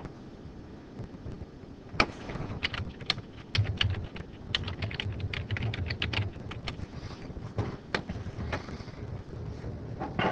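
Typing on a computer keyboard: a fast run of key clicks lasting about four to five seconds, followed by a few separate clicks.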